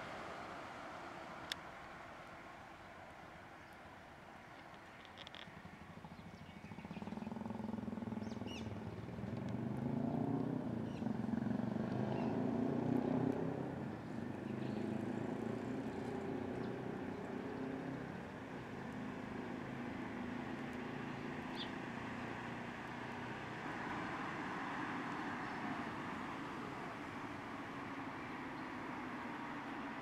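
Road traffic at a signalled crossing: a steady wash of vehicle noise that swells with engine rumble as vehicles pass, loudest from about a quarter to halfway through. A few faint, short high-pitched chirps are heard above it.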